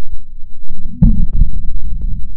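Falcon 9 rocket explosion and fireball on the launch pad heard from a distance: a loud, deep rumble with a sharp boom about a second in.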